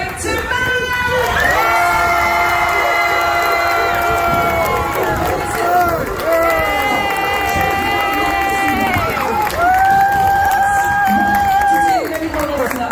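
Large crowd cheering, with three long drawn-out shouts, each held for a few seconds.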